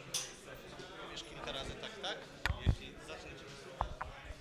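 Indistinct voices in a hall, broken by low thumps from a live microphone being handled during a sound check: two close together about two and a half seconds in, the second the loudest, and another near the end.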